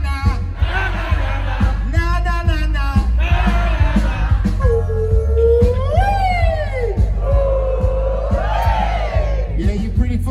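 Live reggae band playing a steady groove with heavy bass, as a male singer ad-libs over it in long, gliding held notes through the middle.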